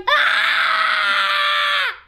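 A young child's scream, one long, high call held at a steady pitch for nearly two seconds, dropping in pitch as it cuts off.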